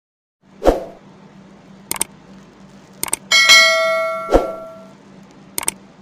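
Subscribe-button animation sound effects: short mouse clicks in pairs, two soft thumps, and a bright bell chime about three seconds in that rings for over a second. A faint steady hum lies underneath.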